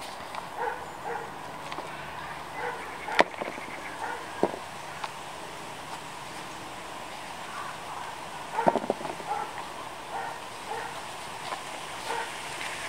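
Gloved hands rummaging through compost in a plastic pot, pulling out potatoes, with a few sharp knocks as potatoes are dropped into a plastic seed tray. Breeze hisses on the microphone throughout.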